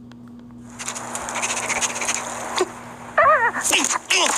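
Animated film trailer soundtrack playing back on a phone, over a low steady hum. About a second in a loud hissing rush of sound effects starts, and near the end comes a high, wavering cartoon character voice.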